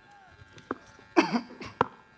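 A man's short cough, close into a microphone, about a second in, with a few small sharp clicks around it.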